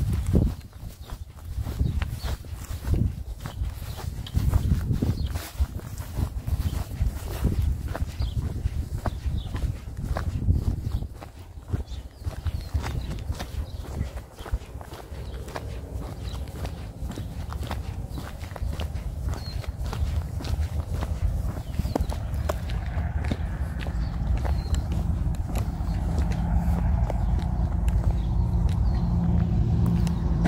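Footsteps of a person walking on pavement: a steady run of light clicks over a low rumble. In the last several seconds a steady low hum rises and grows louder.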